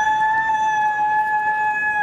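A person's voice holding one long, high-pitched note, level in pitch.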